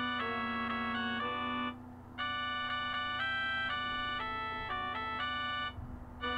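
Organ-toned keyboard music, synthesized in sound: sustained block chords over a held low note. The phrase breaks off briefly about two seconds in and again near the end.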